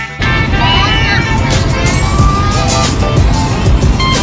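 Road and engine noise of a moving car heard from inside the cabin, with children's high-pitched voices and laughter over it.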